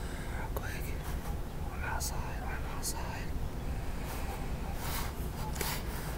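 A man whispering close to the microphone, with two breathy hisses near the end, over a steady low rumble.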